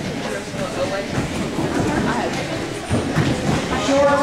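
Wrestling-room din in a large hall: indistinct overlapping voices with scuffs and a few thuds of bodies on the mats.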